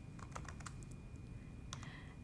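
Faint typing on a computer keyboard: a quick run of soft keystroke clicks in the first second and a couple more near the end.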